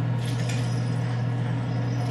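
A steady low hum, with a faint light clink about half a second in.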